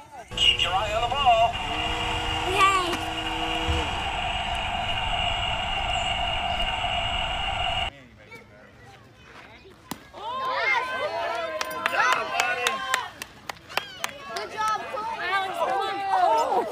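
Steady outdoor background noise with a low hum and faint voices for about eight seconds. Then, after a short lull, several excited voices of adults and children shout and cheer over one another, with a few sharp clicks among them.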